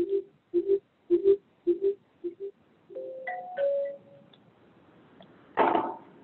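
An electronic marimba-like chime repeating a two-note figure nearly twice a second, then stopping about two and a half seconds in. A short higher tune follows, and a brief louder sound comes near the end.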